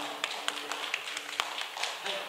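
Sparse, uneven hand claps from a few people, about a dozen sharp claps over two seconds.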